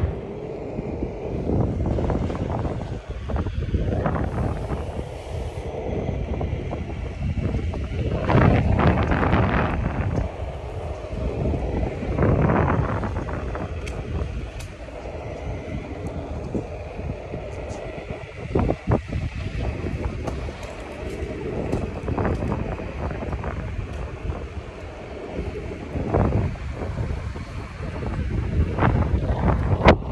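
Wind buffeting a phone's microphone while moving along a street: an uneven rumble and hiss that swells and fades, with scattered sharp clicks.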